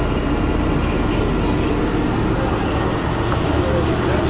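Steady low rumble and hum of a tour bus's engine and cabin while it drives across the airport apron.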